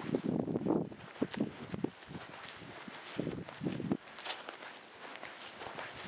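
Footsteps of a person walking across grass and sandy ground: an irregular series of soft steps with grass rustling underfoot.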